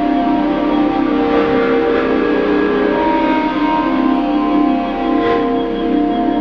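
Electronic ambient music made by a Python script with the Ounk library: layered, sustained drone tones, some slowly entering and fading while others hold.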